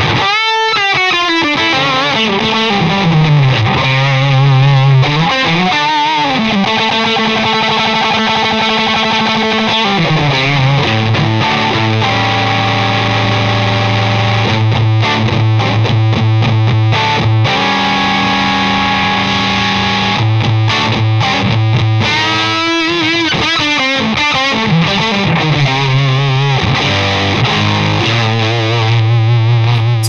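Electric guitar played through a germanium fuzz pedal, the Rare Buzz Effects Fuzz Bob-omb: thick fuzzed riffs with long held low notes, and notes that slide and bend between phrases.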